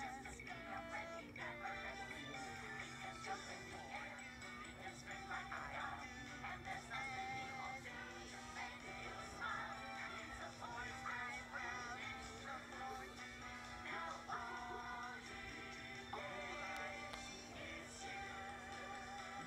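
A children's TV show song playing through a television's speaker: a singing voice over backing music, with a steady low hum underneath.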